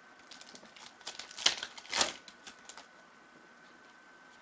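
Foil trading-card pack wrapper crinkling and tearing open under the fingers, a quick run of crackles with the two loudest snaps about a second and a half and two seconds in, dying away by about three seconds.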